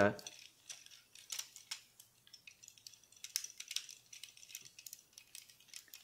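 Hard plastic parts of a Transformers Titans Return Voyager Megatron toy being folded and pressed into place by hand. They make a string of faint, irregular clicks and light rattles.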